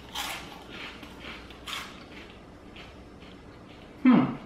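Chewing crunchy cinnamon twists: a run of crisp crunches, about two a second, that grow fainter as the mouthful is broken down.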